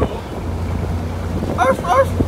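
Small boat's motor running steadily with wind buffeting the microphone and water rushing past the hull. Near the end come two short, high-pitched calls in quick succession.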